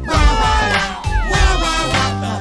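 Baby-crying wails for the 'bawl, bawl, bawl' line, a few falling cries over bright nursery-rhyme backing music with a steady bass.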